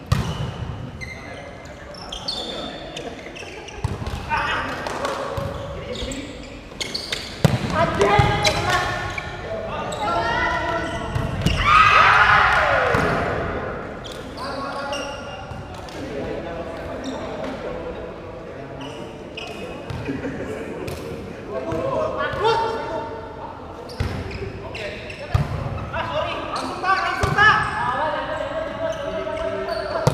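Volleyball rally in a large echoing sports hall: the ball is slapped by hands and thuds on the court floor again and again, while players call and shout. The loudest moment is a long shout that falls in pitch near the middle.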